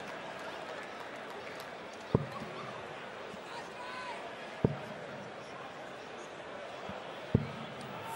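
Three steel-tip darts thudding one after another into a Unicorn Eclipse Pro bristle dartboard, about two and a half seconds apart, over a steady murmur in the hall.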